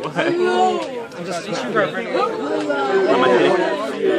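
Chatter: several people talking at once, with no one voice clear enough to make out words.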